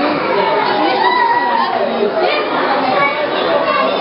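Crowd of young children and adults talking and calling out at once, a steady hubbub of overlapping voices in a play room.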